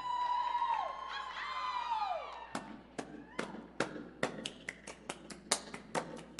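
Audience cheering: a couple of long, high "woo" calls that fall away in pitch at the end, followed from about halfway in by scattered handclaps.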